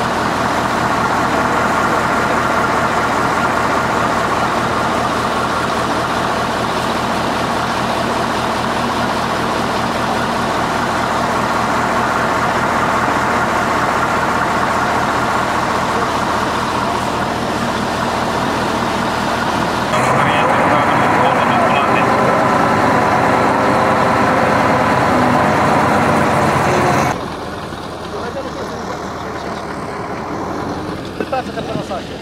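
A dump truck's engine idling steadily under the chatter of a crowd. The sound jumps louder about two-thirds of the way through and drops off abruptly near the end.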